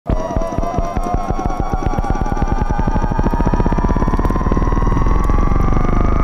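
Electronic song intro: synthesizer tones rise slowly in pitch over a pulsing beat that speeds up until it blurs into a steady buzz, a build-up before the track drops.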